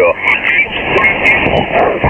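Kenwood TS-590 transceiver's receiver being tuned across the 40-metre amateur band in lower sideband: snatches of garbled, off-tune voices and band noise slide past, with the narrow, thin sound of single-sideband radio audio.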